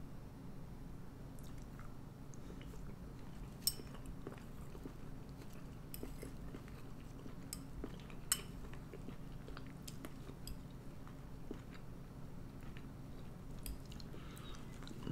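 A person quietly chewing a mouthful of chunky canned soup, with pieces of burger meat, potato, carrot and bean. A metal spoon taps and scrapes in a ceramic bowl, with two sharper clinks, one about a quarter of the way in and one just past halfway, over a faint low hum.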